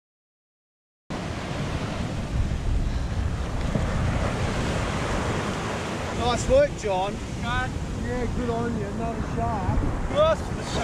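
Surf breaking on a beach, with wind rumbling on the microphone, starting suddenly after a second of silence. From about six seconds in, a string of short pitched calls that rise and fall cuts through the surf.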